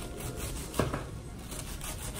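Serrated kitchen knife slicing a cabbage quarter thin on a plastic cutting board. There are two short knife strokes through the leaves and onto the board, the stronger one just under a second in.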